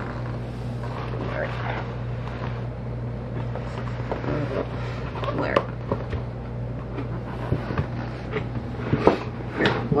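Cardboard beer carton being handled and slid over a cat: scattered rubs, scrapes and light knocks of cardboard, sharper around the middle and near the end, over a steady low hum.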